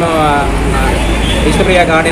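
A man talking into microphones, with a steady low rumble of street traffic underneath from about half a second in.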